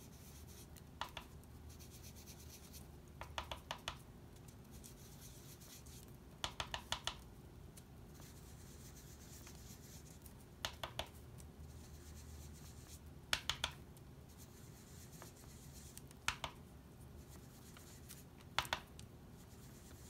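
Foam finger dauber dabbing ink onto a small die-cut card circle: quiet taps in short clusters of two to four, every two to three seconds.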